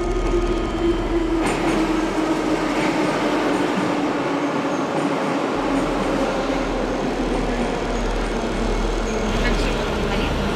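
Metro train running through an underground station: a steady rumble with a low hum that slowly falls in pitch.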